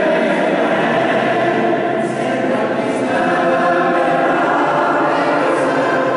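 A choir singing long held chords with orchestral accompaniment.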